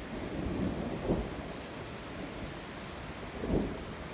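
Wind buffeting the microphone outdoors, heard as a low rumble over a steady hiss, with two brief stronger gusts, about a second in and near the end.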